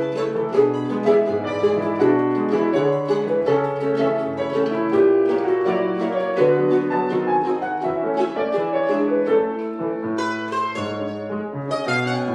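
Grand piano and bandolim (Brazilian mandolin) playing a Brazilian tango together in a lively, steady rhythm, the piano carrying full chords and bass while the bandolim's plucked notes sound over it, most clearly near the end.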